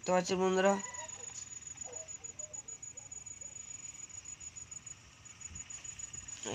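A voice for under a second at the start. Then faint outdoor background with a few faint short clucks from distant chickens, and a thin steady high whine throughout.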